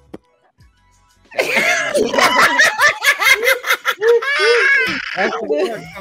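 Several people laughing hard together over a video call, starting about a second and a half in after a brief near-quiet pause.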